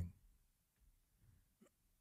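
Near silence: a pause in a man's speech, with the end of a spoken word fading out at the very start.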